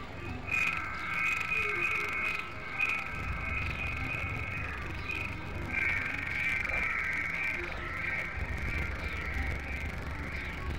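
Experimental electronic music made of several tracks layered together: a cluster of high sustained tones over a low rumble. The tones break off briefly about halfway through and then come back.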